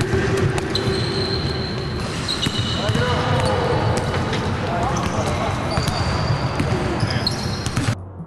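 Basketballs bouncing on a hardwood court, many irregular thuds from several balls at once, with players' voices in the background.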